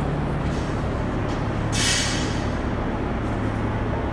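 A short whoosh about two seconds in, as of a Concept2 rowing machine's fan flywheel spun by a pull on the handle to wake its PM4 monitor, over a steady low hum.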